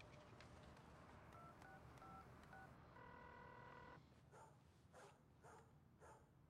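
Faint phone keypad dialing tones: four short beeps, each of two pitches, followed about a second later by a steady one-second tone of several pitches.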